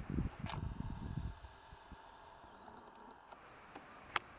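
Wind rumbling on the microphone for about a second, then near quiet with a faint steady hum and a single click.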